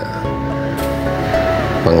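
Background music, with a brief rushing noise about a second in as a mandau blade cuts through a banana bunch's stalk.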